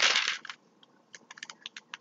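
A short breathy rush that fades within half a second, then a handful of light, irregular clicks at a computer, keys and mouse being worked.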